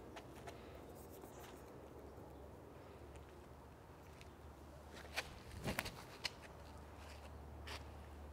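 Footsteps and shoe scuffs on a concrete tee pad during a disc golf run-up, with a cluster of sharp taps and scuffs about five to six seconds in as the drive is thrown. The rest is faint outdoor background.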